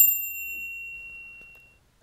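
A single bright bell-like chime sound effect, struck once and ringing out, fading away over about a second and a half.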